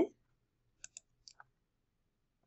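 Four faint computer mouse clicks in two quick pairs, about a second in.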